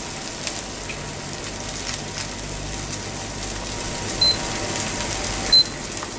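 Two short, high electronic beeps, about four and five and a half seconds in, from an induction hob's touch controls as the heat is adjusted. Under them, a low steady hiss of fish fillets sizzling in a frying pan.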